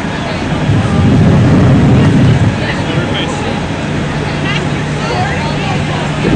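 Steady low engine hum with faint scattered voices, and a louder low rumble lasting about two seconds near the start.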